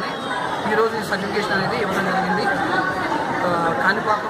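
A man speaking continuously into a bank of press microphones, with chatter from the people around him.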